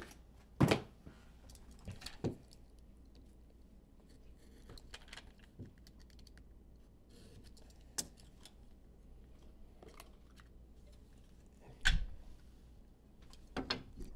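Clear hard-plastic card box being handled and opened: scattered faint clicks and rustles, with a sharper knock near the end.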